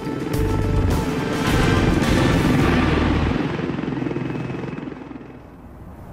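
Helicopter rotor sound mixed with music. A deep bass stops about three seconds in, and the whole thing fades down near the end.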